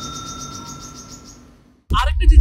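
The ring of a rickshaw's handlebar bell dying away: a clear metallic tone with a faint pulsing shimmer that fades out over about a second and a half, then a man's voice cuts in at the very end.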